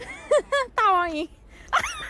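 A dog yelping and whining: two short cries, then a longer cry falling in pitch, and another short cry near the end.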